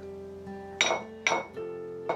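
Two sharp glass clinks about half a second apart, ringing briefly, as something glass is knocked on a coffee table. Under them runs a film score of soft held notes.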